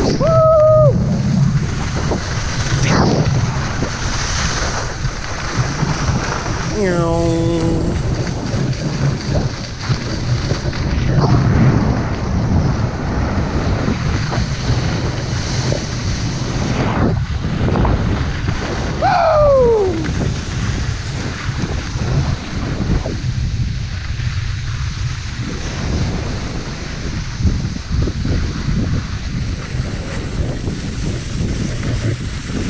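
Wind rushing over an action camera's microphone during a fast downhill ski run, a steady loud noise with a low rumble, mixed with skis hissing over wet snow. A shouted 'Woo!' comes about seven seconds in.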